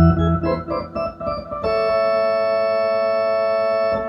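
Keyboard with an organ sound played in ballpark-organ style: a low chord struck, a quick run of short detached notes, then a chord held for about two seconds.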